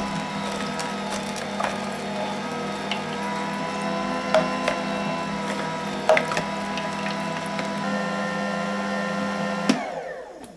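Old horizontal slow (masticating) juicer running with a steady motor hum while its auger crushes pineapple, with scattered cracks and clicks from the fruit. It cuts off suddenly near the end.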